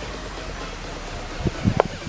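Steady background hiss, with a few short low thumps about one and a half seconds in.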